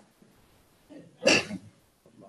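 A single short, sudden burst of sound from a person, just past the middle, amid otherwise near-silent, noise-gated call audio.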